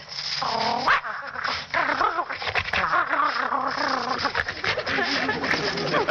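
A man's vocal imitation of a dog, meant as a playful dog: a short rising whine about half a second in, then continuous rough barking and yapping.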